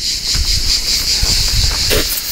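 Steady high-pitched insect chorus, with uneven low rumbling and thumps from the handheld phone as it is carried on foot.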